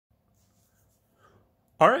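Near silence, then a man's voice says "Alright" at the very end.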